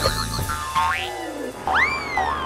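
Cartoon sound effects in a break in the music: a warbling tone, then a quick upward glide about a second in, and near the end a springy boing that shoots up in pitch and slides slowly back down.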